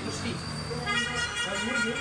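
People talking in Kannada, with a steady vehicle horn honking for about a second, starting about a second in.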